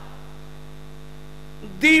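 Steady electrical mains hum from a microphone and loudspeaker sound system during a pause in a sermon. A man's amplified voice starts again near the end.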